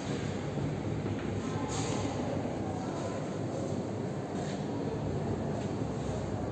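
Steady low rumble and hiss of room background noise, with no distinct events.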